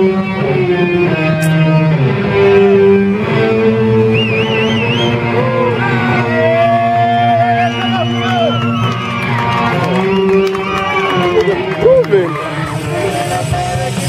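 Loud rock music led by an electric guitar playing sustained notes with bends and vibrato over a steady bass line.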